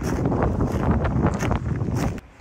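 Wind buffeting the microphone: a loud, irregular rush of low noise that cuts off suddenly at the end.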